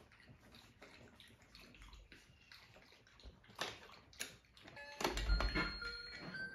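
Faint wet clicks, then about five seconds in a bump as a puppy noses into a toy cash register, which starts sounding electronic beeps and a jingle.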